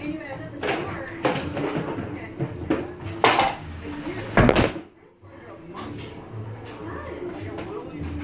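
Knocks, clatter and rustling as household things and a plastic bag are handled during tidying up: several sharp knocks, the loudest about four and a half seconds in.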